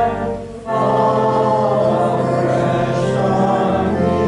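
Small congregation singing a hymn together in held chords, with a short break between phrases about half a second in.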